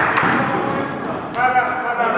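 Men's voices calling out over a game of basketball in a large gym, with the ball bouncing on the hardwood floor as a player drives to the basket.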